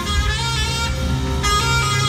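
Saxophone played live over a band, holding sustained notes with a new note about one and a half seconds in, a bass line running underneath.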